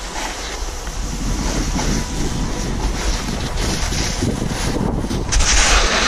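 Wind buffeting a camera microphone during a snowboard descent, a steady low rumble, mixed with the hiss of the snowboard sliding over packed snow. The hiss swells louder near the end as the board carves a turn and throws up snow.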